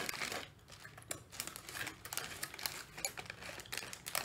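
Thin clear plastic snack bag crinkling and rustling in irregular crackles as fingers rummage inside it among small rice crackers.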